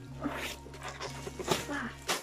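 Plastic crinkling and rustling of an A2 poster binder's sleeves as a large poster is forced into them, in several sharp bursts, with a few short wordless voice sounds of effort.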